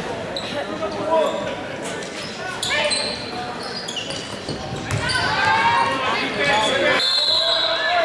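Basketball game in a large gym: a ball bouncing on the hardwood court among shouting voices of players and spectators, which grow louder about five seconds in.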